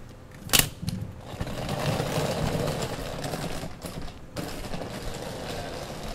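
Wheeled suitcase: a sharp click about half a second in as its handle is pulled up, then its wheels rattling steadily as it is pulled over pavement.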